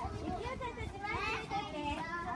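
A group of young children chattering as they walk, several high voices overlapping.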